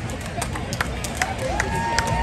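Parade crowd along the street: scattered clapping and voices, with a drawn-out call from a spectator starting about one and a half seconds in.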